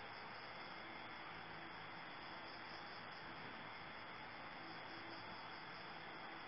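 Faint, steady high-pitched chorus of crickets over an even background hiss.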